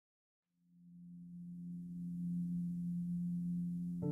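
Background music opening: one low sustained note that fades in about half a second in and holds steady.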